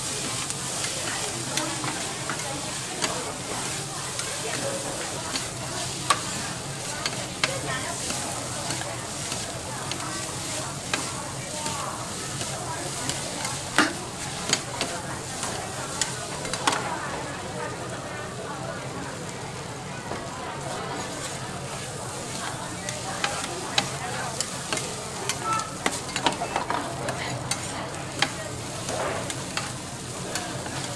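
Noodles and vegetables sizzling on a hot flat iron griddle as two metal spatulas scrape along the plate and toss them. Sharp metal clacks of the spatulas striking the griddle come at irregular moments over the steady sizzle.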